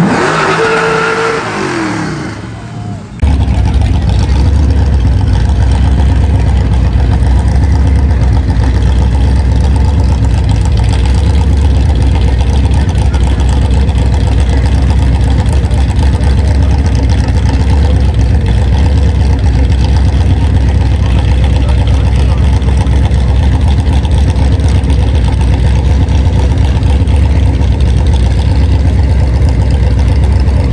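A pickup truck's engine falls in pitch for the first few seconds, then cuts abruptly to another truck's engine running with a loud, steady low rumble while it stands at the line of a burnout contest.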